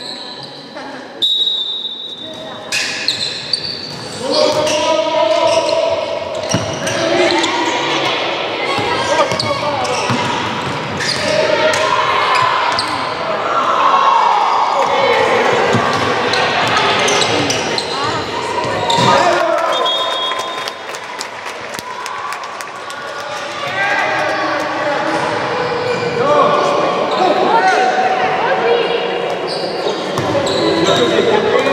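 A handball bouncing on a wooden sports-hall floor among shouting voices, all echoing in the large hall.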